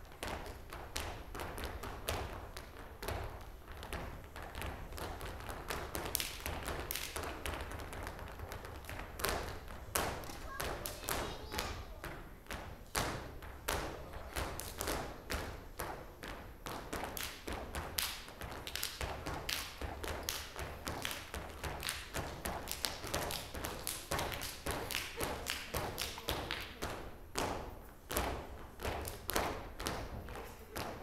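Dancers' shoes stamping and tapping on a stage floor, a dense, uneven run of sharp taps and thuds of flamenco-style footwork.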